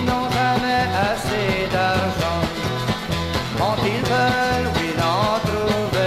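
Instrumental break of a country song: bass and drums keep a steady beat under a lead instrument playing bending, sliding melody notes.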